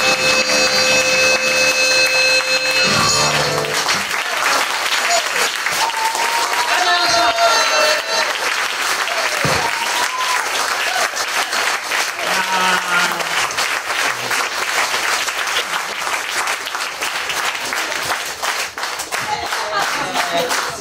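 A live band's final held chord ringing out and stopping about three and a half seconds in, then audience applause with shouts and whoops of cheering for the rest.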